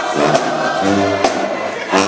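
Marching band playing, brass including sousaphones sounding held chords, with three sharp drum hits.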